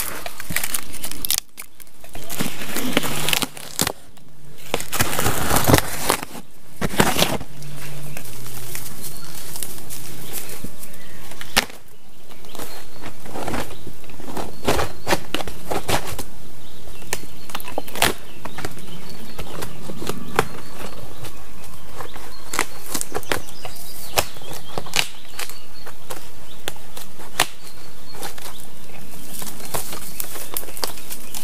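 A large sheet of birch bark crackling and rustling as it is peeled and pulled away from a birch trunk, with many sharp snaps and a flapping rustle as the stiff sheet is handled.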